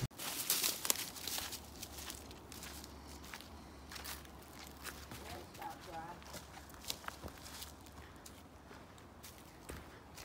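Footsteps crunching and rustling through dry fallen leaves. The steps come thickly for the first two seconds, then turn sparser and softer.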